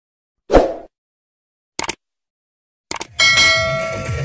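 Intro sound effects over a black screen: a thud about half a second in, short clicks just before two and three seconds, then a loud, bell-like ring with several steady tones, slowly fading.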